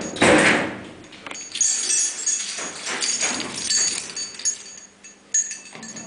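Hütter freight elevator door being worked: a loud metal clank just after the start, then a series of metal scrapes and squeaks.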